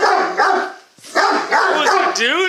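Great Dane barking and yelping in rough, excited play, a run of pitched calls with a short break about a second in.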